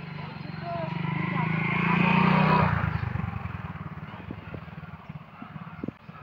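Motorcycle engine approaching and passing close by. It grows louder to a peak a little over two seconds in, then drops in pitch and fades away.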